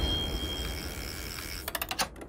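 Reverberant tail of a cinematic title-card hit, fading steadily, then a quick run of sharp mechanical clicks, ratchet-like, near the end.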